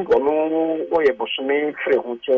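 Only speech: a voice talking without pause, with the thin, narrow sound of a telephone line.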